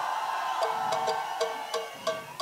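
Live electro-pop band music: a held note fades while a short repeated two-note figure of about three notes a second starts about half a second in, with light ticking percussion in time.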